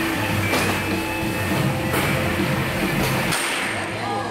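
Music playing steadily, with about three sharp knocks through it.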